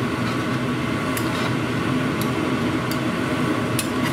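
Steady whir of a kitchen exhaust hood fan over a cast iron pot of frying pork fat, with a few light clicks of a metal spoon against the pot as the pork belly is stirred.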